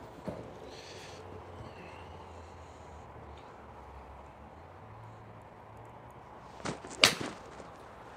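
Callaway XR Pro iron striking a golf ball off a hitting mat: one sharp crack about seven seconds in, just after a softer click.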